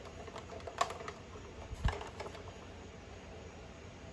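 A few light clicks and taps of hard plastic as a toy Blackhawk helicopter model is handled and turned, the sharpest click about a second in and a duller knock just before two seconds in.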